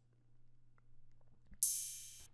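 A ride cymbal sample from a trap beat's drum track, played back on its own and struck once about one and a half seconds in, a bright metallic hit that fades over about half a second.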